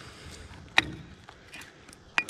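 A single sharp click about a second in, with a few fainter ticks and low handling noise around it.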